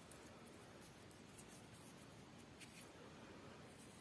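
Near silence, with faint rustling and a few light ticks of fingers working polyester tatting thread through a picot with a shuttle.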